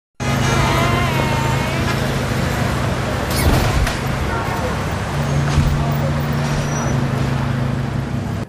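Street ambience of old cars cruising: a steady low engine hum under road and traffic noise, with a few knocks near the middle and voices in the background.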